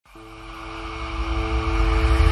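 Logo intro sound effect: a low rumble swells steadily louder under two held tones, building up like a riser.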